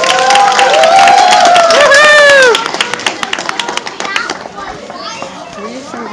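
Loud high-pitched voices in long swooping calls over many sharp claps, stopping abruptly about two and a half seconds in, followed by quieter children's chatter and scattered claps.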